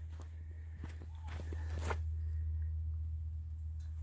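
A few footsteps and light knocks in the first two seconds, over a steady low hum.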